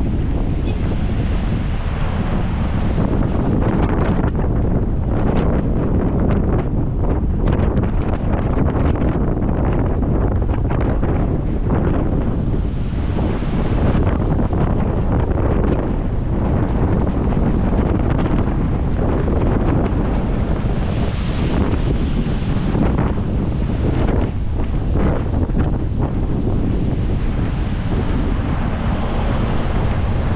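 Heavy wind noise buffeting the microphone: a loud, steady rumble that wavers slightly in strength throughout.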